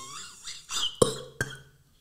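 A man making feigned choking and gagging sounds: strained, squeaky throat noises that waver in pitch, then two short sharp coughs. The sound cuts off abruptly about a second and a half in.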